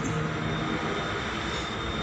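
Steady background noise, an even hiss and rumble with a faint high whine, in a short pause between words.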